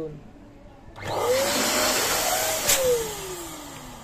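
Electric twin-nozzle balloon pump switched on about a second in, its motor running and blowing air as it inflates two balloons at once, the whine rising as it spins up. A click past the middle, after which the motor whine falls steadily in pitch and fades as it winds down.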